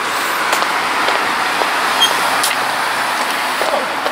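Steady rushing road and wind noise from riding a bicycle on the road, continuous for the whole stretch, with a faint low hum in the middle and a few light clicks.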